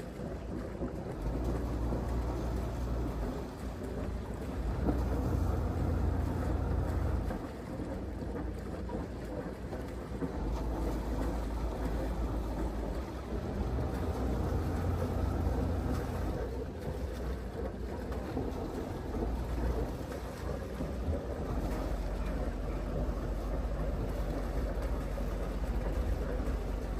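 Wind buffeting the microphone in low rumbles that come and go every few seconds, over the low, steady running of a slow-moving river cruiser's inboard diesel engine and the water around it.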